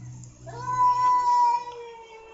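Cat yowling at another cat in a face-off: one long, drawn-out threatening caterwaul that starts about half a second in and holds a steady pitch. It is the warning call of a cat fight.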